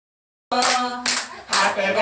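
A small group clapping in a steady rhythm while voices sing along, starting about half a second in after a moment of silence.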